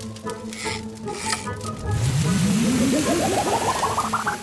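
Cartoon sound effect of a fire hose cannon starting to spray water: a loud hiss begins about halfway through, with a fast pulsing tone climbing steadily in pitch over it. Light background music plays before the spray starts.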